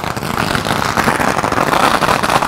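A string of firecrackers (saravedi) going off in a dense, continuous rapid crackle of pops.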